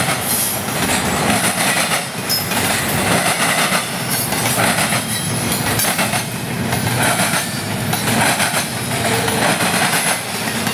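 Double-stack container well cars rolling past close by: a steady rumble of steel wheels on rail, with repeated clacks as wheels go over the track and a faint wheel squeal now and then.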